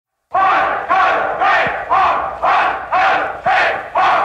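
A crowd's massed shout, sampled and looped so that it repeats identically about twice a second, opening an industrial dance track.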